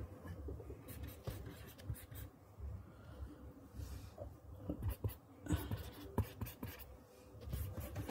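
Pen scratching on paper in short bursts of handwriting strokes, with brief pauses between them.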